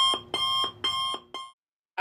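Electronic alarm beeping in a regular repeating pattern, about two beeps a second, stopping about one and a half seconds in.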